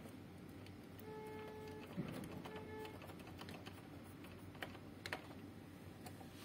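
Faint scattered clicks and light taps from handling the opened amplifier and its parts, the sharpest about two seconds in. A short steady tone sounds twice in the first half.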